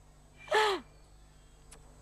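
A person's short, breathy vocal sound about half a second in, falling in pitch, followed by a faint click near the end.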